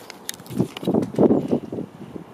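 Hurried footsteps on a concrete patio with rustling camera-handling noise, a quick run of uneven thuds.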